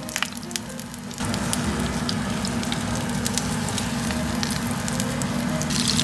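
Daechang (beef large intestine) sizzling in a frying pan in its own rendered fat, with scattered crackles and pops. The sizzle gets louder about a second in.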